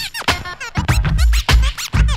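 DJ scratching a record on a turntable over a hip-hop beat: quick back-and-forth scratches that bend sharply up and down in pitch, several a second, over heavy kick-drum hits.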